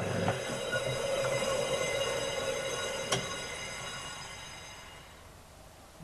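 Lathe tool taking a light finishing cut across the face of a cast iron brake disc: a steady, high-pitched metallic squeal made of several tones, which fades away over the last couple of seconds. A single sharp click about three seconds in.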